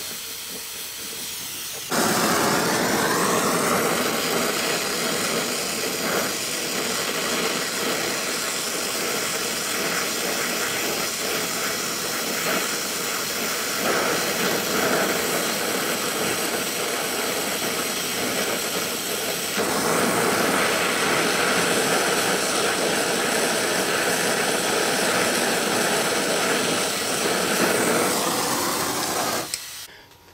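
Brazing torch flame hissing steadily as it heats a copper tube on a refrigeration evaporator coil, brazing shut a hole burned in the tube. It grows louder about two seconds in and cuts off just before the end.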